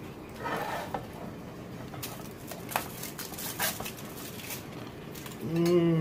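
Metal slotted spatula scraping over a foil-lined baking sheet and a plate while roasted vegetables are served, with a brief rustle under a second in and a few light clicks. Near the end a person hums an appreciative 'mmm'.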